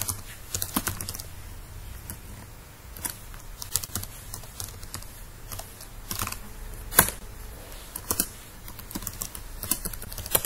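Keystrokes on a computer keyboard: irregular runs of key clicks with short pauses, as an email address and then a password are typed in. One click about seven seconds in is louder than the rest.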